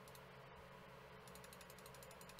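Near silence with faint ticking from a computer mouse, a few scattered ticks and then a fast even run of them in the second half.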